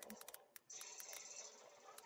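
Near silence: faint room tone with a few scattered soft clicks and a faint hiss that comes in just under a second in.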